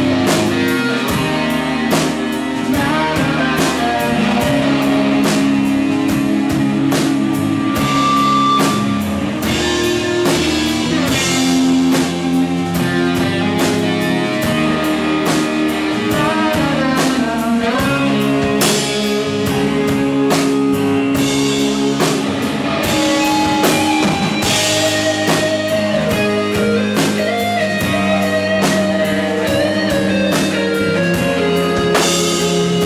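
Live rock band playing an instrumental passage without vocals: electric guitars over bass guitar and a drum kit with cymbal strikes, loud and steady throughout.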